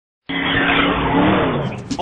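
A car with its tires squealing over the engine, starting abruptly about a quarter second in. The engine note falls in pitch near the end.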